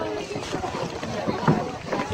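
Water splashing and sloshing in a swimming pool as people flounder in it, loudest about one and a half seconds in, with raised voices of onlookers around it.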